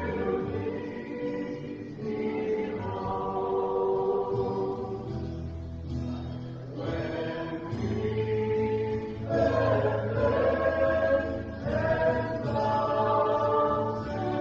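A choir singing a hymn in sustained phrases, with a steady low accompaniment underneath.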